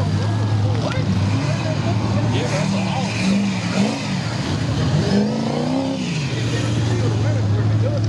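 Diesel engine of a lifted Ford Super Duty mud truck on oversized tractor-tread tires, running hard and revving up and down in waves through the middle, then settling back to a steady drone. People's voices over it.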